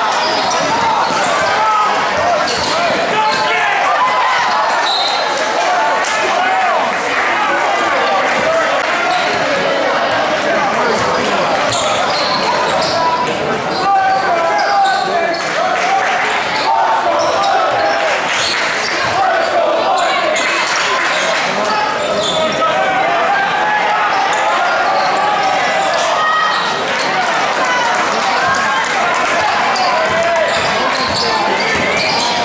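Basketball being dribbled and bounced on a hardwood gym floor during play, with short sharp clicks through a steady, echoing babble of voices from the benches and crowd.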